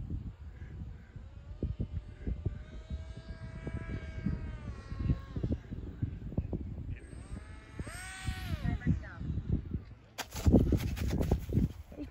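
Electric motor and pusher prop of an RC foam jet whining in two passes over the field on the landing approach, each whine dropping in pitch as it goes by and eases off. Wind buffets the microphone throughout and turns to a loud rush in the last two seconds, as the plane comes down on the grass.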